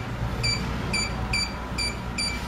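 Key-press beeps from a Focus wireless alarm control panel's keypad as a password is keyed in: four short, high beeps about half a second apart.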